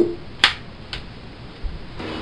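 Two sharp clicks about half a second apart, the second fainter, then a soft low thump near the end.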